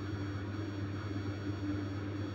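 A steady low background hum, with no other sound.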